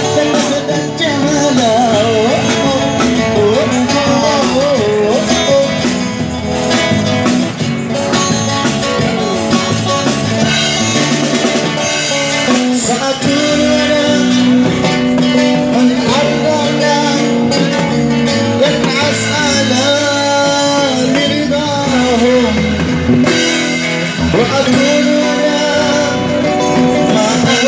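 Live band playing a song: a voice singing over guitars and a drum kit.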